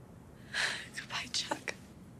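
A person whispering a short phrase, starting about half a second in and lasting about a second, breathy and without a clear voiced pitch.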